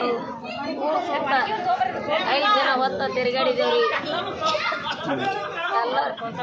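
Several women's voices talking over one another, with no other sound standing out.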